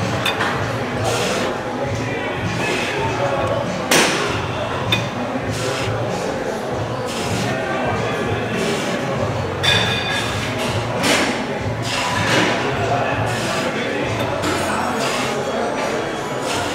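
Busy gym ambience: background voices and music with metallic clinks of weights and machines, and one sharp clank about four seconds in.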